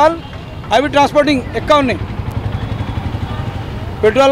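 A motor vehicle engine's low, steady rumble that comes to the fore about halfway through, after a man speaks briefly.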